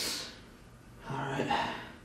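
A man's sharp gasping breath, then about a second later a low, drawn-out voiced groan.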